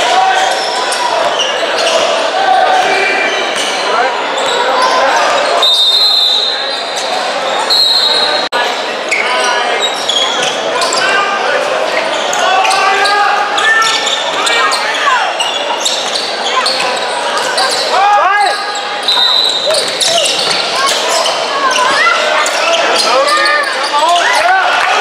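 Basketball game sounds in a large, echoing gym: a ball dribbling on the hardwood floor amid shouting and chatter from players and people along the sidelines.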